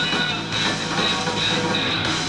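Rock band playing live: electric guitar, bass guitar and drums going together in a loud, dense wash of sound.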